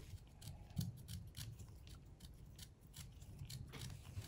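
Small pointed carving knife cutting into a crisp green-skinned, pink-fleshed radish, making a run of faint, quick crisp clicks at an uneven pace as the blade slices petals.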